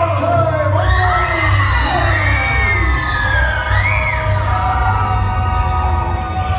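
Loud dance music with a steady pulsing bass beat, played for a stage dance-off. High gliding voices or whoops rise and fall over it for the first few seconds.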